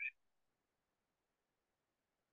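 Near silence: faint room tone, with the tail of a spoken word in the first instant.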